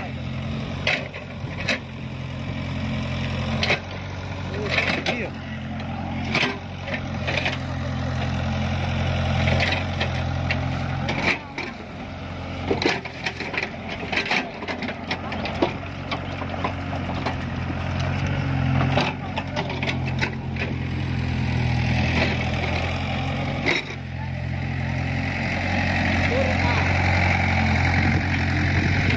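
A steady low mechanical hum, like an idling engine, runs throughout under many short, irregular sharp clicks and crackles from electrofishing in a flooded, muddy rice paddy.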